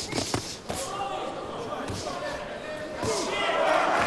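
Several sharp thuds from the boxers in the ring, over arena crowd noise with shouting that grows louder near the end.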